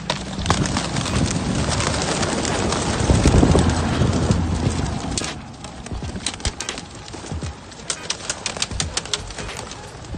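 A flock of racing pigeons bursting out of opened release crates together: a dense rush of wing flapping that builds to its loudest about three seconds in, then thins out after about five seconds to scattered clicks and flaps.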